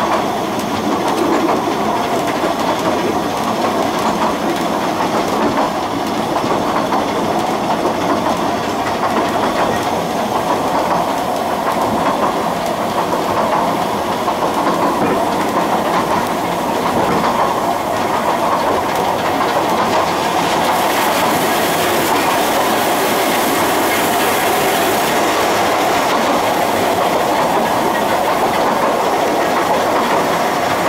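Narrow-gauge steam locomotive and train running along the line: a steady rumble with wheel clatter over the rail joints. A higher hiss joins in for a few seconds about two-thirds of the way through.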